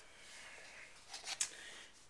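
Faint kitchen handling noise: a short cluster of quick clicks and rustles a little past the middle as a glass measuring cup of cocoa powder is picked up from the counter.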